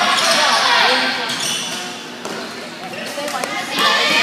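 Spectators' voices echoing in a school gymnasium, with a basketball bouncing on the hardwood floor. The crowd quiets around the middle and picks up again near the end.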